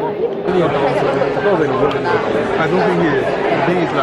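Babble of many students chattering at once in a large lecture theatre, overlapping voices with no one speaker standing out.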